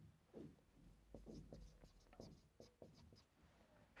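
Faint strokes and squeaks of a marker pen writing on a whiteboard, a string of short scratches with small gaps between them.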